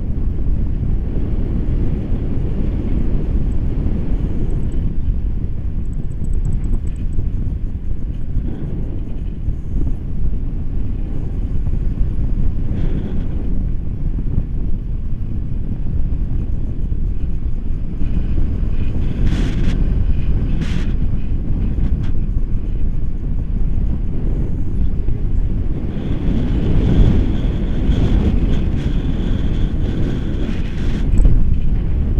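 Wind rushing over an action camera's microphone held out on a pole from a tandem paraglider in flight: a loud, steady low rumble, with a few brief crackles a little past the middle, swelling louder near the end.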